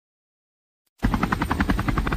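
Silence, then about halfway through a fast, even pulsing sound starts suddenly, at about a dozen beats a second.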